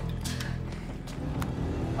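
A crime drama's soundtrack playing back: tense background music with a car engine running underneath, and a few short clicks.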